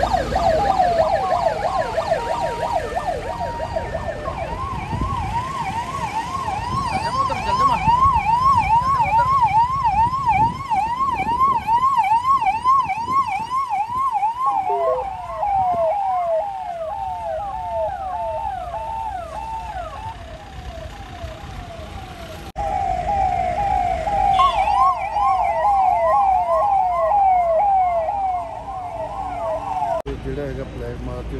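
Electronic yelp sirens on a convoy of police patrol vehicles, rapid rising-and-falling sweeps of a few per second, with two sirens overlapping at times. The sweeps shift lower about halfway through and grow louder again near the end, over the low rumble of the passing vehicles' engines.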